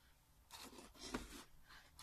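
Near silence with a few faint rustles and scrapes as a stiff white card, with small wooden clothespins clipped along its edge, is picked up and handled, about half a second and a second in.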